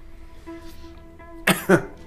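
Quiet background music, then about one and a half seconds in a man coughs twice in quick succession.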